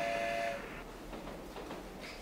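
A steady whistle-like tone made of several held pitches that cuts off about half a second in, followed by low room noise.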